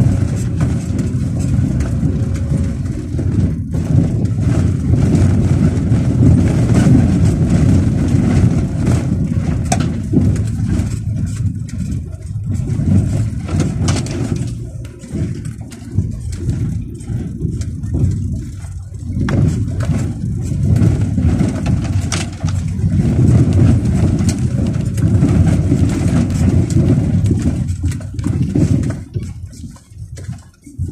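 Car engine and tyres rumbling over a rough dirt track, heard from inside the cabin, with occasional knocks from the bumps. The rumble eases briefly around the middle and again near the end.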